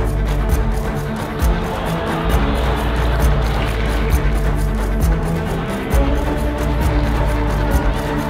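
Background music with a deep sustained bass and a steady beat.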